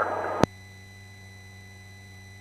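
A sharp click about half a second in as the headset intercom audio cuts out, leaving a faint steady electrical hum with thin tones.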